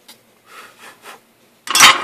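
Faint rubbing and handling noises at a solder joint on an LED strip, then near the end a sudden loud metallic clatter as the soldering iron is set back into its coiled-wire stand.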